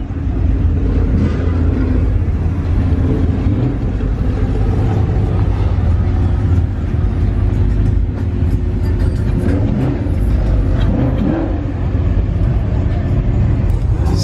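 Car engines running with a steady, deep exhaust rumble.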